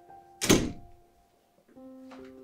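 Soft background piano music with held notes, broken by a single sharp thud about half a second in; the music fades out, then a new low note enters near the end.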